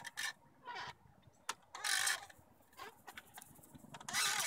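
Wooden backyard swing set creaking in short bursts, about once a second, as the swings go back and forth.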